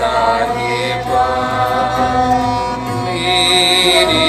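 A woman singing a Gurbani shabad in Raag Gauri Cheti, her voice wavering over sustained bowed strings from a peacock-shaped taus and other Sikh bowed instruments.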